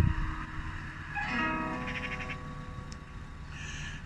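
Background music: a low rumbling drone, joined a little over a second in by a held pitched tone that flutters before it fades.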